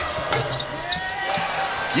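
A basketball three-point shot hitting the rim and the backboard before dropping through, with a sharp strike or two early on, over a steady arena crowd din.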